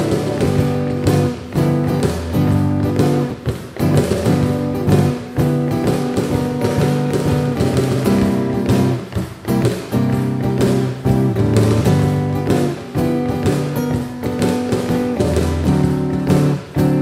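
Steel-string acoustic guitar strummed and picked, with a cajón struck by hand marking the beat. The two play an instrumental passage together, with no singing.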